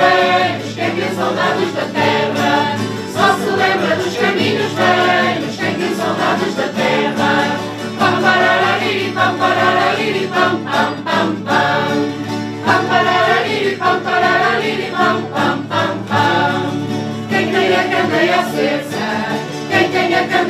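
A mixed group of adults and children singing a Portuguese folk song in unison, accompanied by strummed acoustic guitars.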